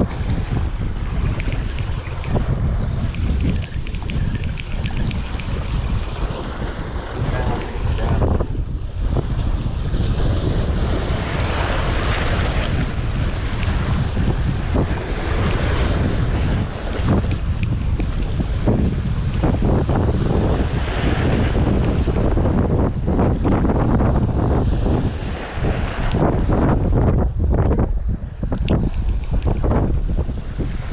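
Wind buffeting the microphone over surf washing against the jetty's rock blocks, a loud, continuous rush heaviest in the low end that swells and eases.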